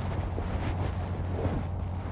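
Wind rumbling steadily on the microphone.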